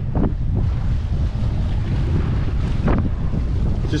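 Strong wind buffeting the microphone over choppy sea, with waves splashing around the boat's hull; a couple of brief sharper sounds break through, about a third of a second in and just before the three-second mark.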